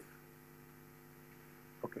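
Faint, steady electrical mains hum: a low buzz of several even tones with no change through the pause.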